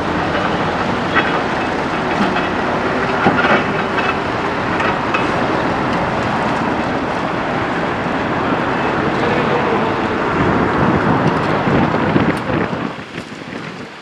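Heavy diesel truck engines running under load with the rattling and clanking of a dump truck's steel tipper body as it is dragged out of a roadside ditch by a tow truck; the noise drops away near the end.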